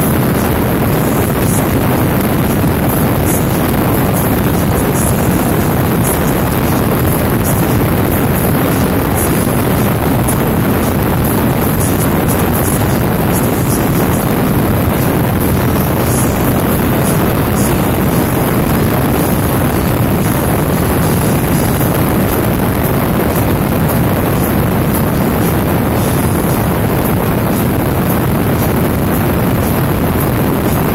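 Steady wind rush over the microphone mixed with motorcycle and road noise at highway cruising speed, unchanging throughout.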